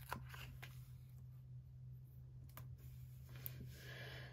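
Faint handling sounds of a paper sticker being peeled off its sheet and pressed onto a planner page: a few soft, brief clicks and rustles over a steady low hum.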